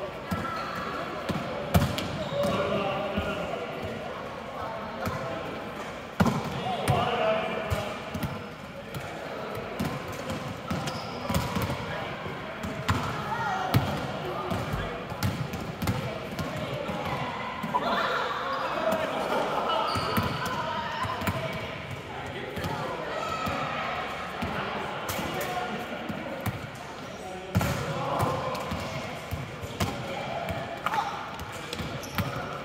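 Volleyballs being hit and bouncing on a hard court floor: repeated sharp slaps and thuds at irregular intervals, over indistinct voices of players.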